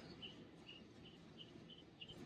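Near silence with a faint, high chirp repeating evenly about twice a second, from a small animal such as an insect or bird.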